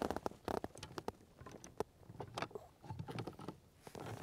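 Scattered light clicks and small knocks of fishing gear being handled and moved about in a kayak's rear storage.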